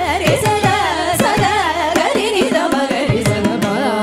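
Carnatic vocal music: women's voices singing an ornamented, gliding melody together, with violin following and mridangam strokes, including frequent deep falling bass beats, keeping the rhythm.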